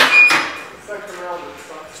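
Leg press sled pushed up off its safety rests: a sudden metal clank with a short ringing tone right at the start, dying away within about half a second.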